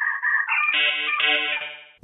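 Short musical logo jingle: a few bright notes stepping upward, then a held chord that fades out near the end.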